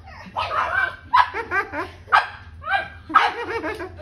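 Black pug puppies barking in play: about six short, high yappy barks, one every half second to a second.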